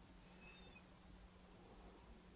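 Near silence: room tone with a faint steady low hum, and a very faint short high chirp about half a second in.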